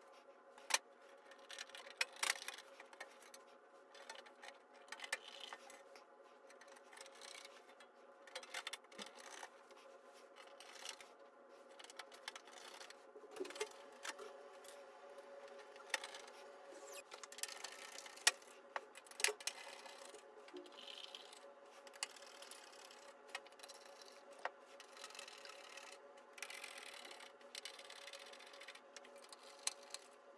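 Small Torx screws being set into a metal top plate and turned in with a hand screwdriver: scattered light metallic clicks and scraping, over a faint steady hum.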